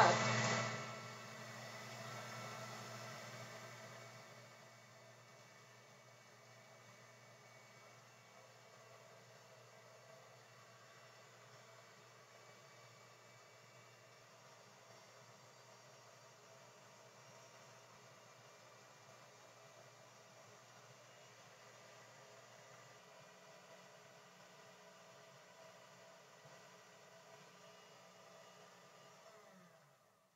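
Electric mixer running on its top speed, whipping heavy cream. Loud for the first second, then a low steady hum that fades to a barely audible hum after about four seconds.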